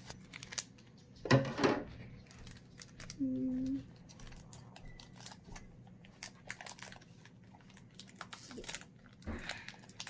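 Scissors snipping across the top of a foil Pokémon booster pack, then the foil wrapper crinkling and rustling as it is pulled open, with many short clicks and rustles. A short vocal sound comes about a second in, and a brief hummed tone at about three and a half seconds.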